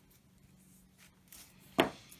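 Soft handling noises of hands moving fishing tackle on a tabletop, with one sharp knock near the end.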